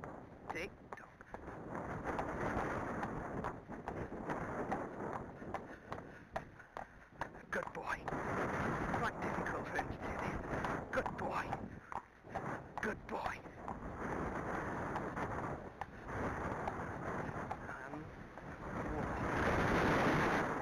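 Wind rushing over a camera microphone, turned down low, with a faint muffled voice under it.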